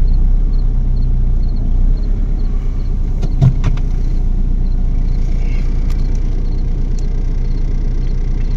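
A vehicle's engine idling, heard from inside the cabin, a steady low hum. A few short clicks and a knock come about three and a half seconds in.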